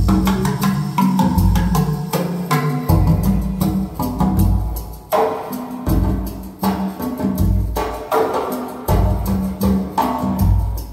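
Recorded music played back over Borresen C3 floor-standing loudspeakers in a listening room: deep bass notes about once a second under sharp percussion hits.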